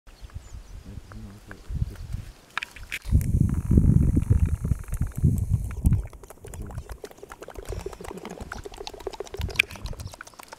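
Baboon lip-smacking while grooming: a quick run of soft, wet clicks in the second half, a sound like chatting. For a few seconds in the middle, low rumbling buffeting on the microphone from wind or handling covers it.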